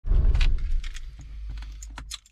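A bunch of car keys jangling and clicking in a hand, over a low rumble that fades away during the first second.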